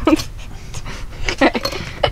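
Breathy laughter in a few short bursts, with a brief voiced giggle about one and a half seconds in.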